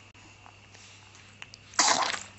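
A two-month-old baby gives a short, breathy cough near the end, after a quiet pause in her babbling.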